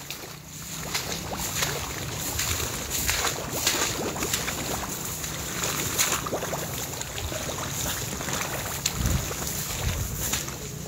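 Wind buffeting a phone microphone, a steady low rush, with irregular swishes of tall grass brushing past as someone walks through it.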